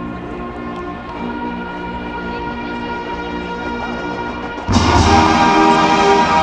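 A marching band playing in a stadium, with sustained brass-band chords. About four and a half seconds in, the full band comes in much louder all at once.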